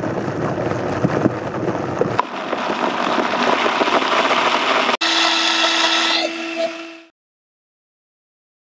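Countertop blender running on a spinach protein smoothie. At first the blades knock through the chunks; about two seconds in the sound turns smoother and loses its low rumble as the mixture liquefies. After a brief break near five seconds the sound becomes a steady, higher-pitched whine, then fades out about seven seconds in.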